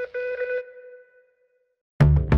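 The final held chord of a TV programme's ident jingle ringing out and fading away within about a second.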